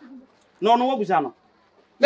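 One short wordless vocal sound from a person, rising and then falling in pitch, starting about half a second in, with a brief faint murmur just before it.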